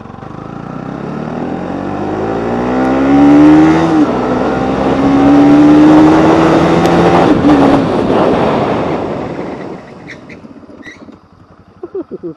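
Bajaj Pulsar NS200 single-cylinder engine accelerating hard with wind rush growing. Its pitch rises, drops at an upshift about four seconds in, and climbs again. Past seven seconds the engine note falls away and the wind fades as the motorcycle brakes hard to a stop, a front-brake-only stopping test.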